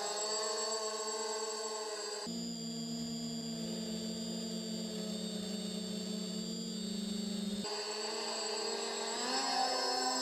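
Multirotor whine from a quadcopter's brushless motors and 8x4 propellers in flight: a steady hum of several fixed tones that changes abruptly twice and rises in pitch near the end as the throttle changes.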